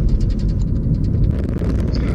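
Steady low rumble of a car driving on a rough rural road, heard from inside the cabin. About one and a half seconds in, the sound changes to a broader rushing noise.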